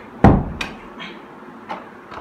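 A loud knock against a wooden door about a quarter second in, followed by a sharp click and a few lighter taps as something is handled and fitted on the door.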